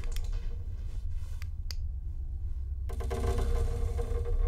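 Low rumbling drone from a horror film's sound design, with a few sharp clicks about a second and a half in. A higher sustained tone comes back in about three seconds in.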